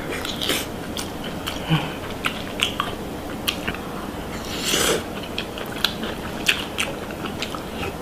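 Close-miked eating: a person chewing and biting food, with many short, sharp clicks as it breaks. A longer, noisier sound of about half a second comes about halfway through.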